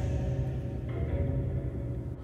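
Eerie drone-like background music: held tones over a low rumble, with the upper layer changing about a second in.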